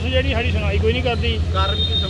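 A man's voice talking over a steady low hum, with a thin, steady high tone coming in about three-quarters of the way through.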